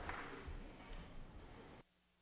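Faint, fading room noise in a large legislative chamber, with a few soft taps, cut off abruptly to near silence just before the end.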